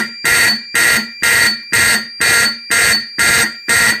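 Simplex 4051 fire alarm horn sounding in alarm, a loud blare pulsing on and off evenly about twice a second.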